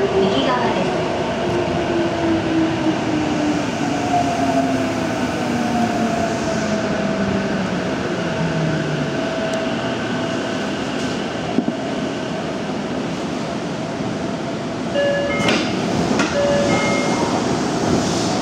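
Tokyo Metro 6000-series subway car slowing into a station: the traction motor whine falls steadily in pitch as the train brakes, over continuous running noise. A few clicks and short beeping tones follow near the end as it stands at the platform.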